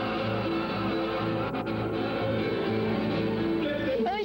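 A live band playing gaúcho nativist music, guitar to the fore over a steady, regularly pulsing bass line.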